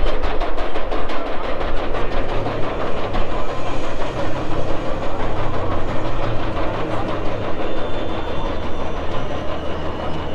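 Steel roller coaster train climbing its chain lift hill, a steady rumble from the track and train. Rhythmic music fades out in the first second.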